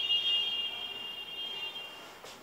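A steady high-pitched electronic beep, one long held tone that stops near the end.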